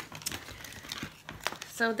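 Plastic crinkling and rustling as shopping items are handled on a table, with a few sharp clicks.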